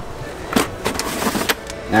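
A cardboard shoebox being handled and opened, with several short rustles and taps of cardboard and tissue paper.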